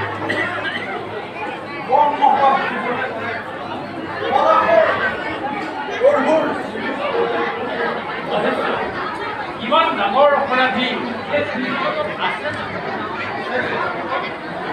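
Speech only: several voices talking, with short pauses.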